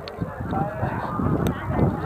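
Rain and wind buffeting a wired clip-on microphone, an uneven low noise, with a sharp click about one and a half seconds in.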